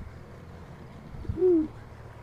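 A single short, low hoot-like voiced call, about a second and a half in, over faint background hiss.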